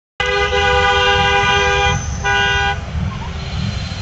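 Car horn honking twice, a long blast of almost two seconds followed by a short one, over the low rumble of road traffic.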